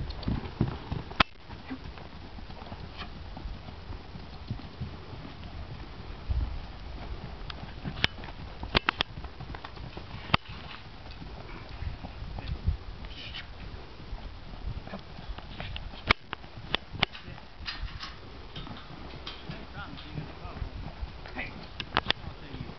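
Hoofbeats of a ridden dun gelding trotting and loping on soft dirt, with irregular sharp clicks scattered through and a low rumble underneath.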